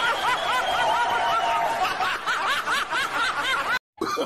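High-pitched snickering laughter: a rapid string of short rising-and-falling 'hee' sounds, about five a second, with a long held high note over it in the first second and a half. It cuts off abruptly just before the end.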